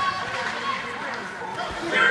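Spectators chattering at an ice hockey game: several overlapping voices with no clear words.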